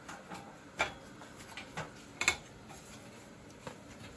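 Light, irregular clicks and knocks of someone climbing an aluminium ladder, feet and hands meeting the metal rungs, about one every half second; the sharpest click comes a little past halfway.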